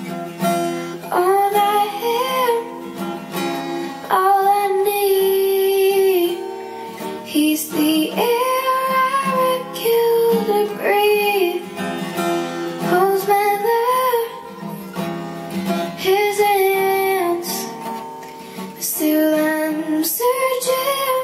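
A young girl singing long held notes, rising and falling, to her own acoustic guitar accompaniment.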